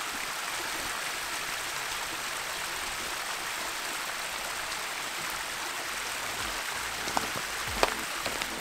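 Thin stream of water trickling and splashing down a wet rock face, a steady hiss of running water. A few light knocks near the end.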